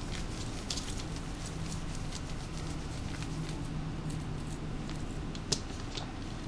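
Quiet, scattered small clicks and ticks from handling a compact digital camera's body while a tiny screw is worked out, over a low steady hum. One sharper click comes about five and a half seconds in.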